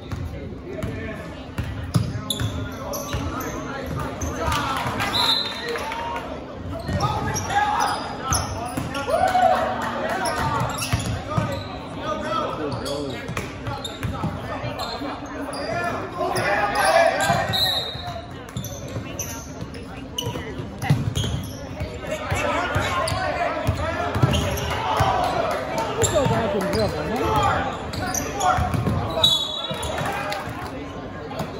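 Basketball being dribbled on a hardwood gym floor during a game, with indistinct shouting from players and spectators, echoing in a large gym. A few short high-pitched chirps stand out, about every twelve seconds.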